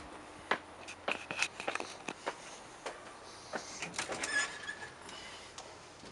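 Front door being unlocked with a key and opened, with footsteps: a run of sharp clicks and knocks from key, latch and steps, with brief squeaks about a second in and again about four seconds in.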